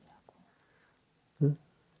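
Near silence: a pause in a conversation, broken near the end by one short spoken word.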